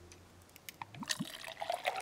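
Wine being poured from an earthenware jug into a clay cup, starting faintly a little under a second in and growing louder as the cup fills.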